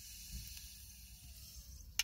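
Faint hiss of air drawn through a small glass pipe while a disposable lighter is held to the bowl, with one sharp lighter click at the very end.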